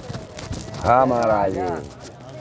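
A person's voice: one short phrase lasting about a second, starting about a second in, over a low background murmur.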